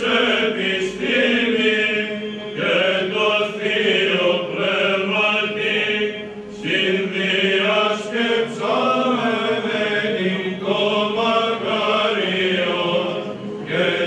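A group of men singing Byzantine chant, the melody moving over a steady held low drone note (the ison).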